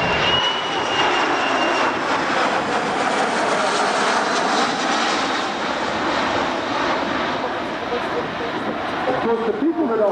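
Jet engine noise from a Boeing 737 flying a banked turn overhead: a steady, loud rushing roar, with a faint high whine over the first two seconds.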